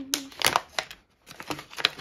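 Toolkit packaging pouch crinkling in the hands as it is picked up and handled: a run of short irregular crackles, with a brief pause about a second in.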